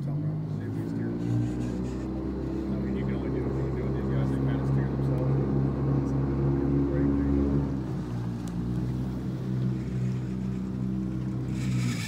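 A fishing boat's motor running steadily at a low, even pitch. It picks up a little about a second in and cuts off just before the end.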